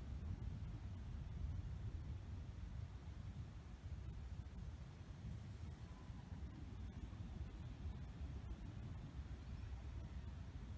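Faint low rumble of wind buffeting the microphone outdoors, steady throughout.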